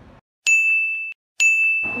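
Two identical electronic ding tones, about a second apart. Each is a steady high note that starts sharply, fades slightly and cuts off abruptly, with dead silence around them.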